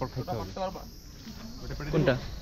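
Steady high-pitched insect chirring, with brief low voices at the start and again near the end.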